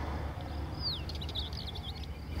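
A small bird singing: one falling whistle, then a quick run of short high chirps, over a steady low rumble.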